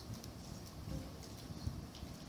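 Faint, irregular clicks and low bumps: handling noise at a lectern as people work the laptop and brush the microphone.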